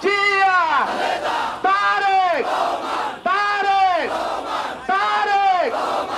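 Crowd chanting political slogans: one man's voice shouts a short slogan about every second and a half, four times, each call falling in pitch at its end, with the crowd's shouting filling the gaps between calls.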